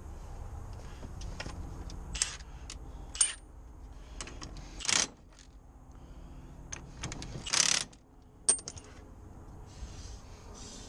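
Metal clinks and taps of tools and a socket on a steel ATV hub, with a couple of sharp ticks that ring briefly. Two short bursts about five and seven and a half seconds in, the loudest sounds, are a cordless impact wrench run briefly on a hub fastener.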